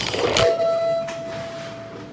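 A radio station transition effect: a sharp hit followed by a single steady electronic tone that slowly fades away.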